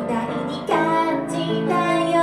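A woman singing a ballad into a microphone with grand piano accompaniment; after a softer moment, a new sung phrase comes in strongly just under a second in.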